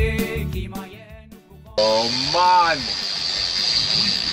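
Music fading out, then a sudden cut to a steady hiss of wind and water on a sailboat under way, with a man's brief voice about two seconds in.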